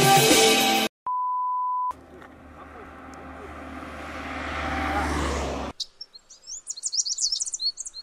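Music stops abruptly, followed by a steady one-second beep. A car approaching on the road grows louder with a low rumble and cuts off suddenly. Then come short, high bird chirps.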